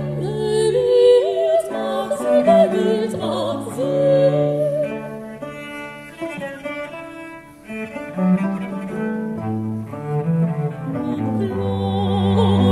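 Baroque chamber ensemble playing an 18th-century Dutch canzonetta with basso continuo: bowed strings over held bass notes. The music grows softer past the middle and builds again near the end.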